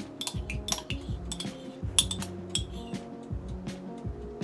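Metal spoon scraping and clinking inside a ceramic mug, a quick series of sharp clinks with the loudest about halfway through, over background music.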